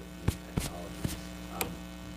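Steady electrical mains hum, with four short sharp clicks spread through it.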